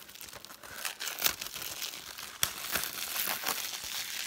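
Clear plastic shrink wrap crinkling and tearing as it is peeled off a Blu-ray case, with two sharp clicks about a second and two and a half seconds in.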